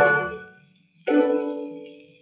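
Orchestral music: a held chord fades away into a brief silence, then about a second in a single chord is struck sharply and dies away.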